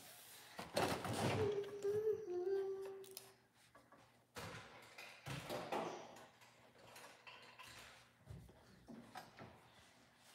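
A voice hums a short two-note phrase, the second note lower, among rustling and knocking of things being handled, followed by more rustling and movement noise.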